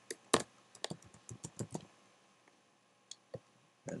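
Computer keyboard typing: a quick run of key clicks over the first two seconds, then two lone clicks a little after three seconds.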